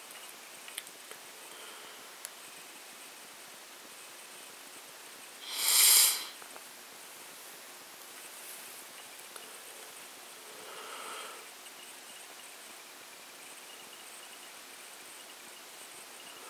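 Quiet room hiss with one loud sniff close to the microphone about six seconds in, and a fainter one about eleven seconds in.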